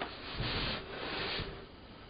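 Soft, breathy noise from a person breathing out without voice, in two short stretches in the first second and a half.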